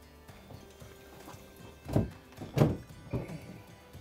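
Dull thunks as a walleye is hauled up out of an ice-fishing hole: two loud knocks about halfway through, half a second apart, then a smaller one, over faint background music.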